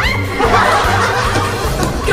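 A small group laughing and shrieking together in a burst of startled laughter, with background music underneath.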